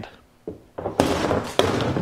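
Rustling and knocking from handling, as a tight vest is pulled onto a hollow plastic mannequin torso. It starts about a second in: a loud rustle with a few sharp knocks in it, after a small knock.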